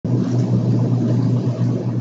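A loud, steady low hum and rumble.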